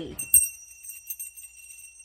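Small brass hand bell being shaken, its clapper striking many times in quick succession over one steady ringing tone that starts a moment in, loudest at the first strike. The bell is not ringing properly.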